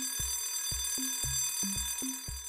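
Cartoon alarm-clock ring sound effect, a steady, dense high ring signalling that the quiz countdown's time is up. Under it, background music keeps a steady beat with a low thump about twice a second.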